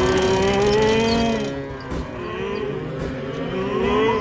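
Cartoon tractors giving cow-like moos as they are startled and tip over. One long drawn-out moo comes first, then several overlap near the end.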